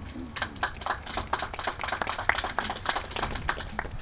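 Audience applauding: a round of distinct, irregular claps from a small crowd.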